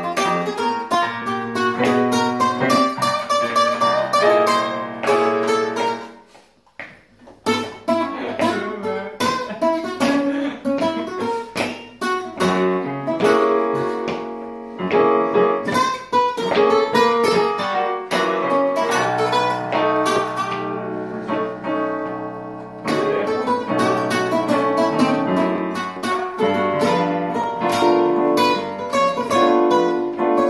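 Guitars playing a blues jam that climbs a half step in key every six bars, with a brief near-pause about six seconds in.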